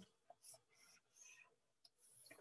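Near silence with about four faint, brief scratches of hand-drawn stylus strokes on a drawing surface, as a triangle is drawn.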